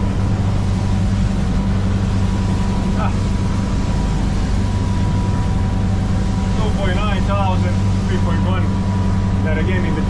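Twin Volvo Penta D4 270 hp diesel engines on IPS drives running steadily at speed, heard from inside the boat's enclosed helm cabin as a loud, even drone with a thin steady whine over it.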